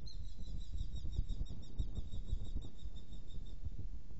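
Eurasian hobbies calling at the nest: a rapid run of high, repeated notes that fades out about three and a half seconds in, over a steady low rumble.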